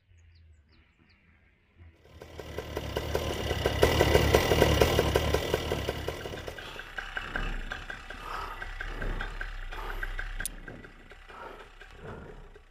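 Two-stroke paramotor engine (Fly Products Eclipse with Moster motor) running on the ground: faint at first, it comes up about two seconds in, is loudest around four to five seconds, then eases back and stays lower to the end.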